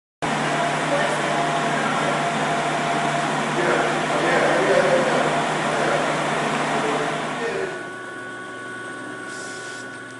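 Stainless-steel ribbon blender running: a steady mechanical noise over a low hum, which drops to a quieter hum with a couple of steady higher tones about eight seconds in.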